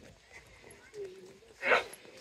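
Background chatter of people at an outdoor fair, with one short, loud call or yelp near the end.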